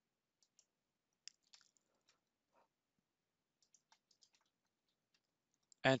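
Faint, scattered clicks of a computer mouse, a few single ones and then a short cluster a little past halfway, with near-silence between them.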